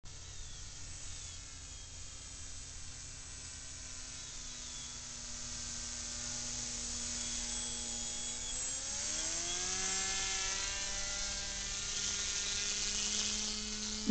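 Brushless outrunner motor and propeller of an RC paraglider (Hirobo Paraplane Sport) whining steadily in flight, growing louder. About nine seconds in, the pitch climbs and then holds higher.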